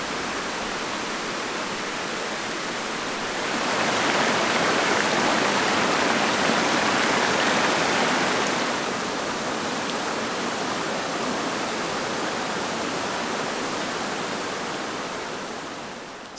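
Hot groundwater splashing down through a cooling tower and over terraced, mineral-crusted steps, where it cools before being used for irrigation. A steady rush of falling water that grows louder about four seconds in and eases again a few seconds later.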